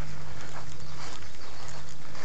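Steady outdoor background noise with a low steady hum underneath and no distinct events.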